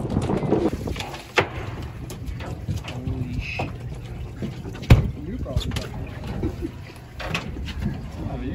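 Steady low rumble of a fishing boat at sea with wind, broken by scattered knocks and one sharp thump about five seconds in.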